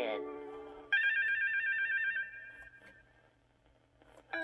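Electronic page-turn cue from an Ideal Talking Big Bird toy: a sudden high trill that warbles rapidly between two pitches like a phone ringer, about a second in, lasting about a second before fading. It is the signal to turn the page of the storybook.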